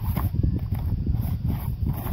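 Wind buffeting the microphone in a low, uneven rumble, with water slapping and splashing around a stand-up paddleboard, a brighter splash just after the start.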